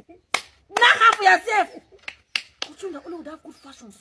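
A woman's excited vocal outburst, set off by a few sharp hand slaps: one just after the start, another about midway and one near the end.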